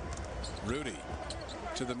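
Arena sound of an NBA game: a basketball being dribbled on the hardwood court over a steady crowd murmur, with brief bits of a commentator's voice.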